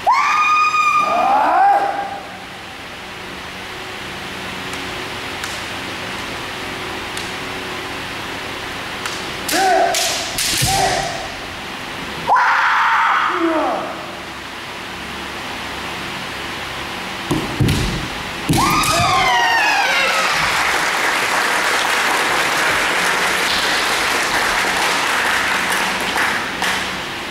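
Kendo players' kiai, long rising yells near the start and again about two-thirds of the way in, with a few sharp cracks of bamboo shinai strikes in between. Spectators applaud through the last several seconds, as the referee's flag goes up to award a point.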